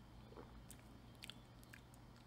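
Near silence with a few faint lip smacks and mouth clicks from someone tasting a soda they have just swallowed.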